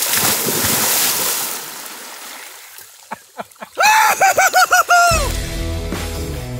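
A big water splash as a person jumps feet-first into a shallow pond, the splashing fading away over about two seconds. Near the end comes a short warbling sound, then rock music starts about five seconds in.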